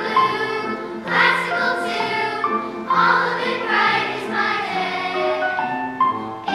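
Children's choir singing a song in sustained phrases, accompanied on an electronic keyboard.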